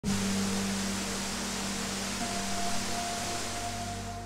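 Steady rush of a waterfall pouring into a rock pool, with soft ambient music of long held notes underneath; a higher held note joins a little over two seconds in.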